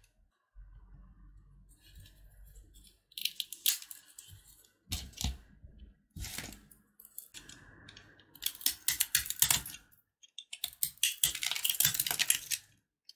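Crisp crackling and clicking of crumbly puffed-rice bars being handled and set down, a few scattered crackles at first. It thickens into dense crunching in the last few seconds as a utility knife blade cuts into one bar.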